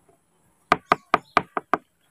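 A quick series of six sharp knocks, about five a second, starting about a second in.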